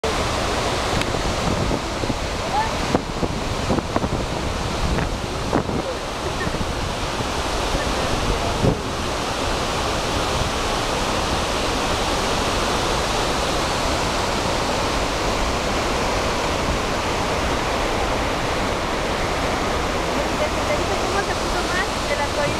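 Salto de Eyipantla waterfall and the rapids below it: a steady, even rush of falling and churning water. A few brief knocks and level jumps break into it during the first nine seconds.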